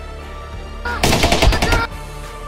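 A loud burst of rapid automatic gunfire, just under a second long, starting about halfway in, over background music.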